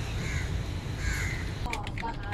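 A bird calling twice, two short harsh calls about a second apart, over a steady low rumble. Computer keyboard typing starts near the end.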